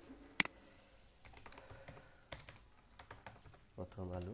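Typing on a computer keyboard: one sharp click about half a second in, then a run of lighter, irregular key taps.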